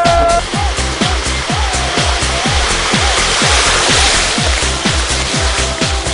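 Electronic dance music with a fast, steady kick-drum beat and a short repeating melodic figure. A rush of noise swells through the middle and fades again.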